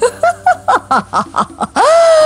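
A woman laughing loudly: a rapid run of short "ha" notes, about six a second, breaking near the end into one long, high, drawn-out cry of laughter.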